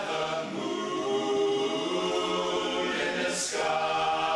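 Men's barbershop chorus singing a cappella in close harmony, holding one sustained chord for about three seconds, then a short hissed consonant and a new chord near the end.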